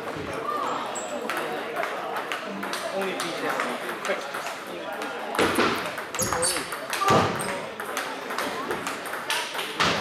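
Table tennis balls clicking off rackets and tables in quick, irregular succession, from the near table and others around it. The sharpest hits come in the second half, over background voices.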